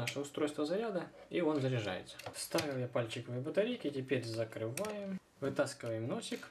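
A man's voice talking, quieter than the main narration, with light plastic clicks from the charging plug being pushed into a small remote-control toy submarine.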